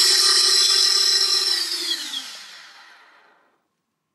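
Brushless motors of a QAV250 miniquad running with a steady whine, then spinning down as the throttle is cut: the whine falls in pitch and fades out about three and a half seconds in.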